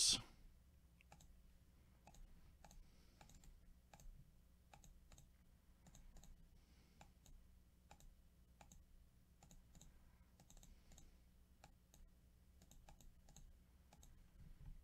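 Faint, irregular clicking of a computer mouse and keyboard as a list is copied and pasted into a spreadsheet, over a faint low hum.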